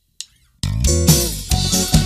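A Romani band's song starts abruptly about half a second in, after a moment of silence broken by a short click: a full band with a heavy bass line and a steady beat.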